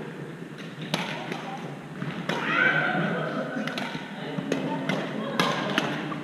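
Badminton rackets hitting a shuttlecock: sharp, separate pops about a second or more apart, echoing in a large gym hall.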